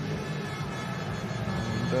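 500cc single-cylinder speedway bike engines running steadily as the riders come off the throttle after the finish.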